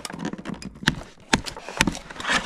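Cardboard-and-plastic toy packaging being handled as a gel blaster is freed and lifted from its box: a run of light crackles and rustles with three sharper clicks in the second half.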